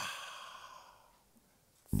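A man's drawn-out "ah" that turns into a long, breathy exhaled sigh, starting suddenly and fading away over about a second.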